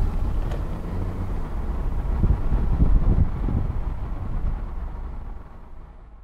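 Cabin noise of a 2015 Volkswagen Jetta 1.8-litre turbo four-cylinder on the move: a steady low engine and road rumble heard from inside the car, swelling slightly a few seconds in, then fading out near the end.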